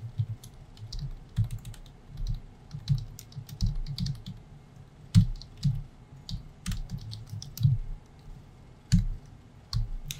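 Typing on a computer keyboard: irregular keystrokes in short runs separated by brief pauses.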